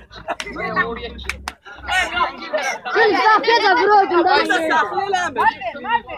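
Several young men's voices talking and calling out over one another, with a few short clicks about a second and a half in.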